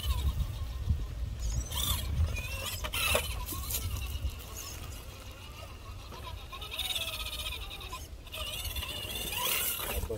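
Axial SCX10 III RC rock crawler's electric motor and gearbox whining as it crawls over rocks, the pitch rising and falling with the throttle, over a steady low rumble.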